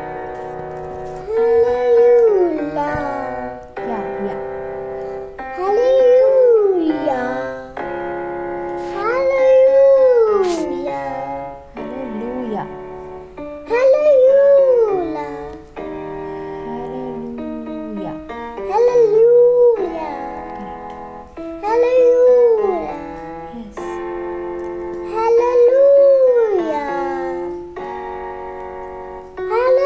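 A child singing a vocal warm-up of pitch slides, each phrase curving up and falling back. About seven such phrases come every three to four seconds over a slowed backing track of held notes.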